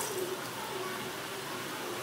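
Bread jamun dough balls deep-frying in hot oil, a steady sizzle, with a faint low tonal call in the background through the first second or so.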